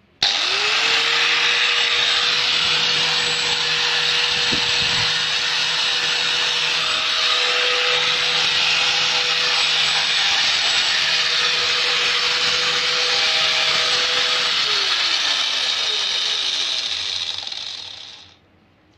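Stramm 500-watt angle grinder with a 115 mm disc switched on and running free with no load: it spins up within a fraction of a second to a steady high whine. About fourteen and a half seconds in it is switched off and winds down, the pitch falling as the disc slows.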